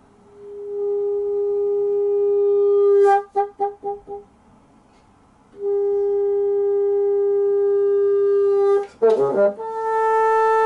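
Solo bassoon holding a long high note that swells in, then breaks into about five quick pulses and stops. After a short pause the same note returns and is held steady, ending in a brief fast flurry of shifting pitches near the end.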